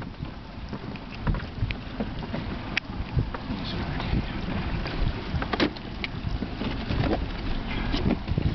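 Wind buffeting the microphone and water moving around a small boat's hull, with scattered sharp clicks and knocks from handling gear on deck.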